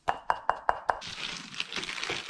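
A spoon clinking against a ceramic mug five times in quick succession, each knock ringing briefly, as pancake mix is knocked off a scoop into the mug. About a second of scratchy rustling follows.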